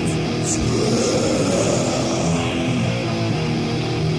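Death/thrash metal band playing from a 1985 cassette demo: a heavy, distorted electric guitar riff with the full band, loud and unbroken.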